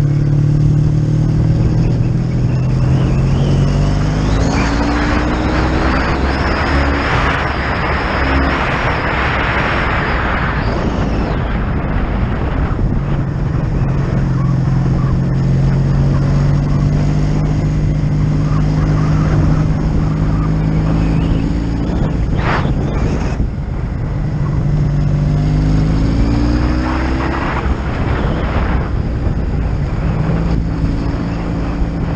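1985 Honda V65 Sabre's liquid-cooled V4 engine running under way. Its note rises as the bike accelerates about two to four seconds in and again near the end, and a rush of wind noise swells in the middle.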